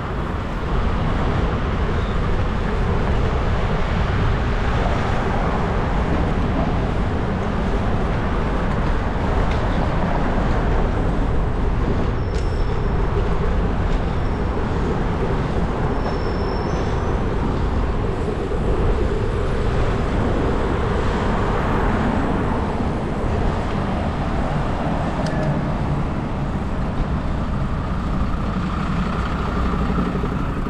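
Road traffic noise heard from a moving bicycle: a steady rush of wind and tyre noise on the camera microphone mixed with the engines of cars, buses and lorries.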